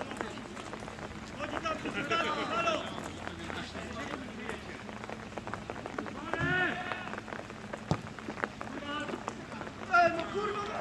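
Rain falling, with many small drop ticks close to the microphone, and short voices calling out now and then across the pitch, the loudest call about six and a half seconds in.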